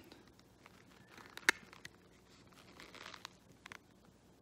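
Faint rustling and crinkling of a paper towel and a clear plastic deli cup as it is handled and opened, with scattered light clicks and one sharp click about a second and a half in.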